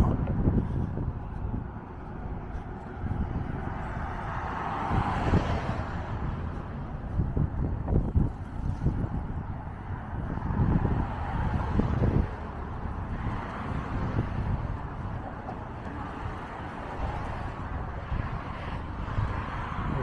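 Road traffic passing on the bridge lanes alongside, with wind buffeting the microphone. One vehicle swells past about five seconds in.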